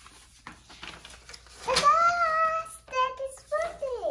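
A young girl's high voice calling out a drawn-out, sing-song "birthday," held for about a second, followed by a few shorter vocal sounds.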